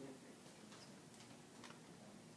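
Near silence: room tone with a few faint, irregularly spaced ticks.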